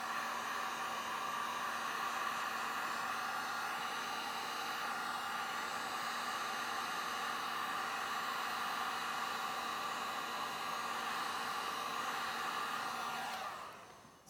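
Handheld electric heat gun blowing steadily over wet epoxy resin to spread the white into lacing; it shuts off and fades out near the end.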